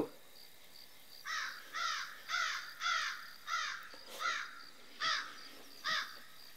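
A bird calling in a run of about ten evenly spaced harsh calls, a little over two a second, starting about a second in. Crickets chirp faintly and steadily underneath.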